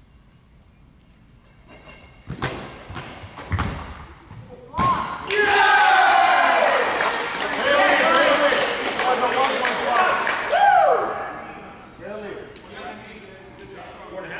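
A goalball thuds heavily on the hardwood floor three times, then several voices shout and cheer together for about six seconds before fading.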